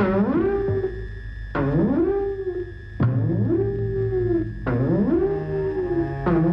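Eerie film background music: a pitched wail slides upward and holds, then falls away, four times about a second and a half apart, over a steady low drone.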